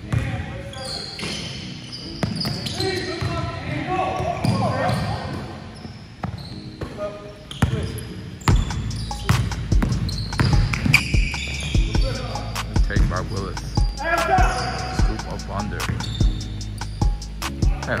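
Basketball bouncing on a hardwood gym floor as players dribble, with players' voices calling out. About halfway in, background music with a steady beat comes in under the game sounds.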